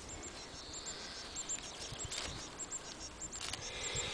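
Soft rustling of plastic tape being pulled into half-hitch knots around an apple graft, in two short bursts in the second half, over faint, high, repeated chirps of a small bird.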